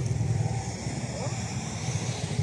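Motorcycle engine idling close by, a steady low rumble.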